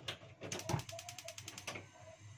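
A couple of knocks, then a quick run of even, sharp clicks, about ten a second, lasting just over a second.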